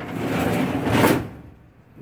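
Steel filing-cabinet drawer sliding shut on its runners for about a second, ending in a bump as it closes.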